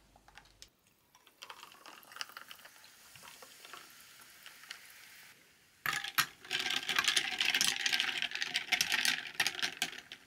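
Carbonated drink fizzing softly in two glasses over ice. About six seconds in, glass straws clink against the glass and ice, and the fizzing turns much louder as the straws stir the drinks.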